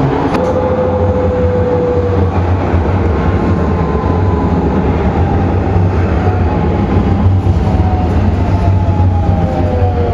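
Vienna U-Bahn U6 train heard from inside the car, running into an underground station: a steady, loud rolling rumble with a motor whine that falls slowly in pitch as the train slows.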